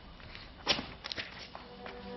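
A few quiet footsteps, about four steps spread over a second, as a person walks across a studio floor. Soft background music with held notes fades in near the end.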